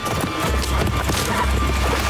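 Horses galloping, their hoofbeats running on over a music score with a low rumble.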